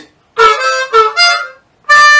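Diatonic blues harmonica played solo: a short run of notes starting about a third of a second in, then a brief pause and one more held note near the end.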